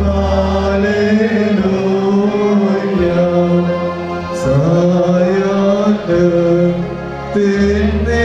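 Liturgical chanting of the Holy Qurbana: voices singing long held notes that step slowly up and down in pitch, over a steady low drone.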